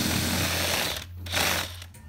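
Power drill with a spade bit boring through an acrylic panel, running fast: a steady drilling noise for about a second, a brief dip, then a shorter second burst before it eases off.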